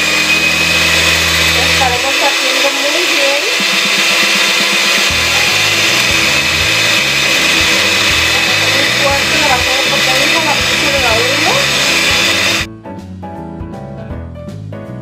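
Electric hand mixer running at top speed, its beaters whipping instant coffee, sugar and cold water into a foam in a glass bowl, with a steady loud whir. Near the end the mixer sound cuts off suddenly and light jazz piano music takes over.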